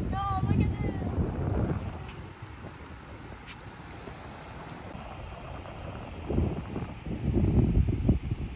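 Wind buffeting the microphone in low rumbling gusts, strong for the first two seconds and again near the end, with a calmer stretch between. A brief high-pitched voice calls out about half a second in.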